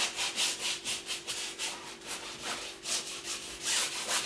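Paintbrush scrubbing oil paint onto a canvas in quick, short hatching strokes, about four a second, the brush pushed against the lie of its bristles.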